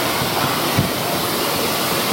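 Steady, even hiss of room and microphone noise, with no distinct events.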